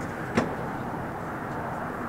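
Steady low hum of a stationary car's cabin, with one brief click about half a second in.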